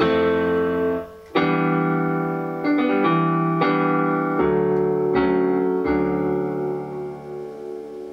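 Kurzweil SP76 digital piano on its plain piano voice playing a slow ballad in sustained chords, a new chord struck roughly every second, the last one fading out near the end.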